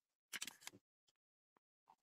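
Near silence, broken by a few faint, brief clicks about half a second in and two fainter ticks later.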